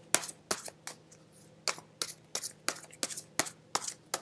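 A tarot deck being shuffled by hand: a run of crisp card snaps, roughly three a second, uneven in spacing.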